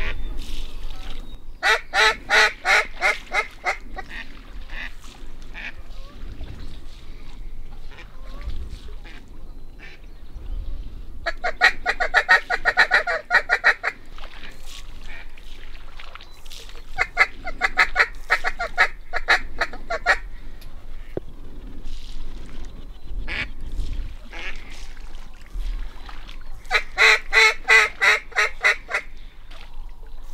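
Duck quacking: four runs of rapid, evenly paced quacks, each lasting two to three seconds, with fainter single calls between them.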